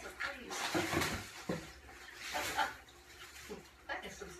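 Plastic air-pillow packing rustling and crinkling in irregular bursts as it is pulled out of a cardboard box.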